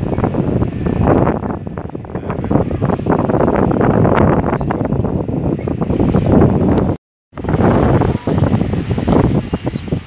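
Wind buffeting the camera microphone, a loud, rough rumble that flutters unevenly. It cuts out suddenly for a moment about seven seconds in.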